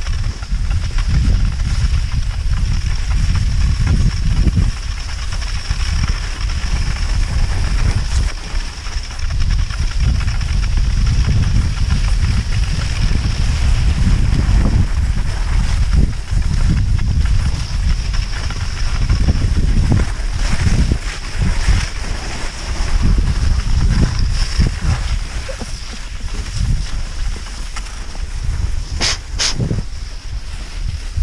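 Wind buffeting the microphone while moving on skis, a loud uneven low rumble that swells and dips. Two sharp clicks come close together near the end.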